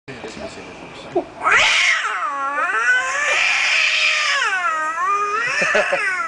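A man imitating a cat's caterwaul: one long, loud, drawn-out yowl that swoops up and down in pitch, with laughter breaking in near the end.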